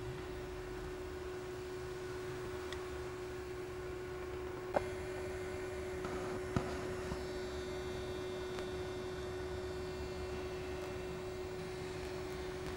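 Steady electrical hum with a low rumble and hiss underneath, broken by two sharp clicks about five and six and a half seconds in.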